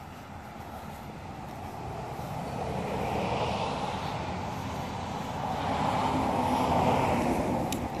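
Passing road traffic: a steady rush that swells about three seconds in, eases, and swells again near the end.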